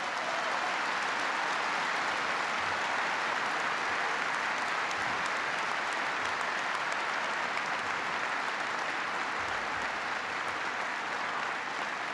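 Large audience applauding in an arena, a steady sustained ovation that holds for the whole stretch and tapers slightly near the end.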